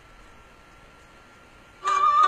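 Faint hiss with a thin, steady high tone. Near the end a band breaks in loudly, a violin leading the opening of a Romanian folk song.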